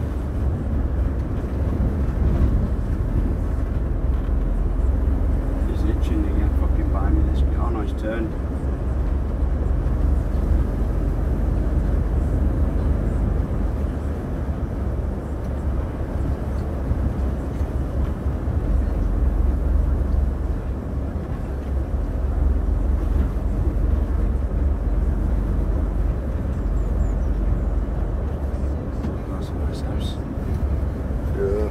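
Lorry cab interior while driving: a steady low rumble of the truck's diesel engine and road noise.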